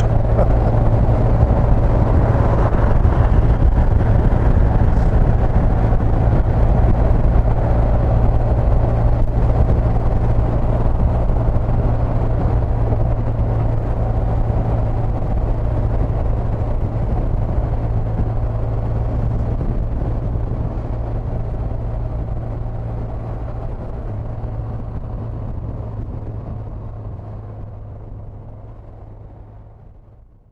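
Motorcycle running steadily at road speed, engine hum with road noise, fading out over the last several seconds.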